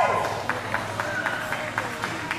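A spectator's whooping call from the arena stands, then a steady run of short, sharp clicks or claps at about four a second.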